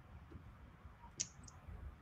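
Quiet room tone with two brief, sharp clicks about a quarter of a second apart, a little over a second in.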